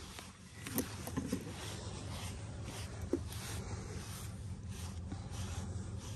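A body brush stroking over a foal's thick coat, a faint repeated brushing, over a low steady rumble.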